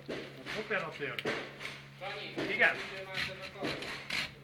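Indistinct talking voices, with a steady low hum underneath.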